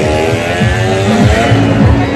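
An engine running at steady revs, mixed with loud fairground music with a thumping bass beat.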